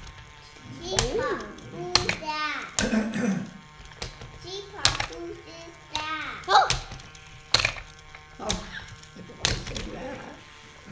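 Loopin' Chewie tabletop game in play: sharp plastic clacks come about once a second, from the flipper levers knocking the spinning arm. Between them runs a melodic sound whose pitch rises and falls.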